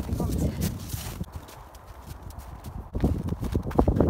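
Hoofbeats of a ridden horse on a snow-covered arena, with a run of heavier thuds about three seconds in.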